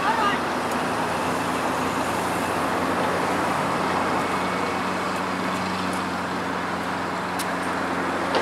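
A steady rumble of outdoor noise with a low, even motor hum running underneath, like distant traffic or an engine. A few brief voice-like chirps come right at the start.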